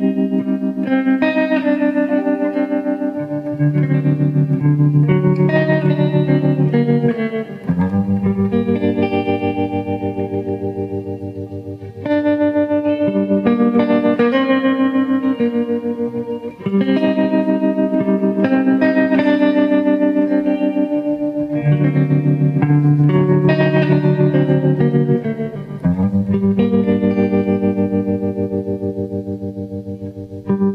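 Slow blues instrumental passage with no vocals: electric guitar chords played through effects, pulsing rapidly like a tremolo, each chord held for several seconds before the next.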